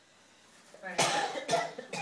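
A person coughing, a short run of loud coughs starting about a second in.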